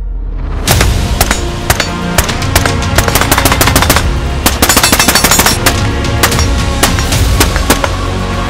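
Suppressed Knight's Armament SR-15 carbine (5.56 mm) firing over loud background music: single shots from about a second in, then a fast string of shots about halfway through.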